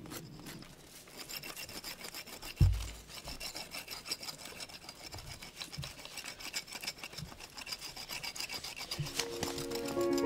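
Quick, repeated rasping strokes of bark being scraped off a devil's club stalk, with a single deep thump about two and a half seconds in. Music comes in near the end.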